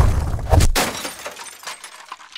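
Glass-shattering sound effect: a sudden heavy impact with a deep boom, a second hit about half a second in, then tinkling fragments fading away.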